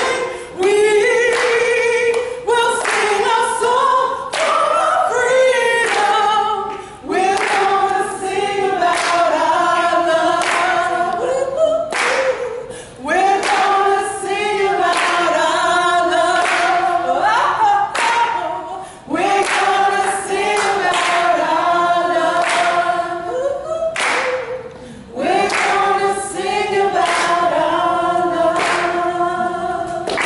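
A group of men and women singing together a cappella, with hand claps, the song moving in phrases of about six seconds with brief breaths between them.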